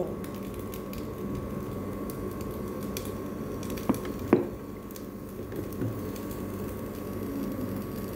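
Cooking oil being poured into an empty nonstick frying pan over a steady background hum, with two sharp clicks about four seconds in as the oil goes in.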